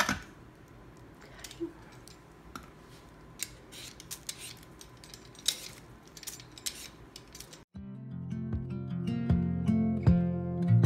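Vegetable peeler scraping the skin off a raw potato in short, irregular strokes. About eight seconds in, the scraping stops and acoustic guitar music starts and is louder.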